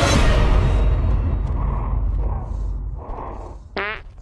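Cinematic film score with a deep low rumble, loud at first and fading away over about three seconds. A brief pitched tone sounds just before the end.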